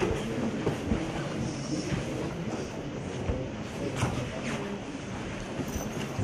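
Steady rumbling room noise with scattered light knocks and faint murmuring.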